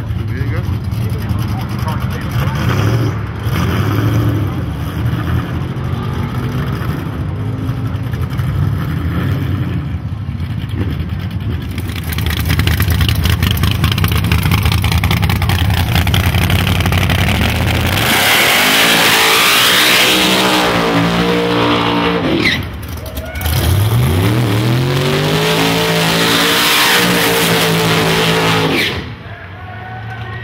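Drag-race car engines idling with a low, steady rumble, louder from about twelve seconds in, then revving hard in two long pulls, each climbing in pitch, with a short break between. The sound drops off just before the end as the cars leave in tyre smoke.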